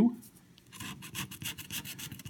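A plastic scratcher tool scraping the coating off a scratch-off lottery ticket in quick, repeated short strokes, starting a little under a second in.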